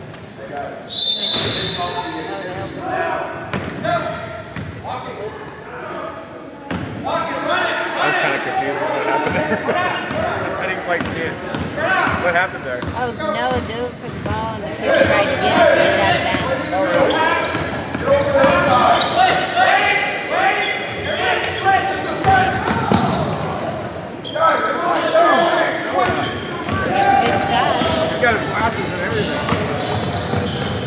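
Basketball bouncing on a hardwood gym floor during play, among players' and onlookers' shouts and calls that echo in the large hall.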